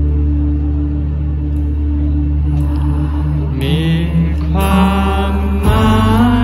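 A live band playing: a held, sustained chord rings for the first few seconds, then singing comes in about three and a half seconds in, and the band moves to a new chord near the end. Recorded from within the crowd.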